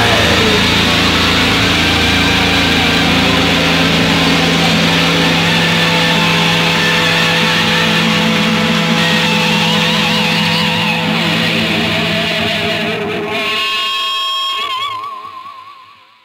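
Distorted electric guitar noise ringing out as a raw hardcore punk song ends, held as a steady drone. Wavering high tones come in over the last few seconds as it fades away to silence.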